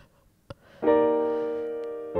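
Piano chord struck about a second in after a short pause, its notes held and slowly fading; a small click comes just before it.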